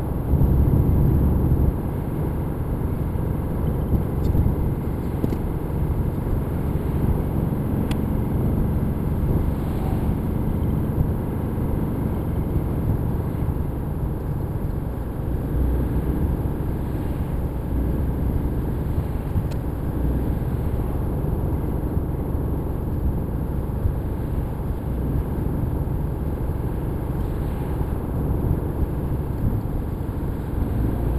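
Steady road and engine noise heard from inside a car cruising at speed on a dual carriageway: a low rumble of tyres and engine, with a louder surge of about a second near the start.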